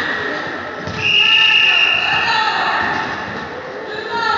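A referee's whistle blows one long steady blast, starting about a second in and lasting just over a second, over the voices of spectators and players.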